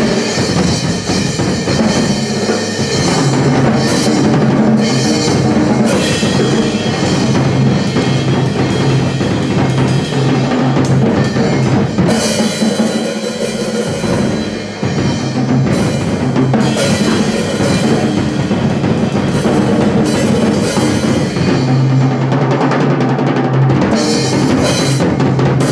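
Acoustic drum kit played hard and fast without pause: dense rolls and hits on snare and bass drum under cymbals, with one brief dip in the barrage about fifteen seconds in.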